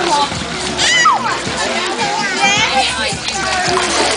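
Pool water splashing as a baby in a float suit is moved through it, with voices over the splashing.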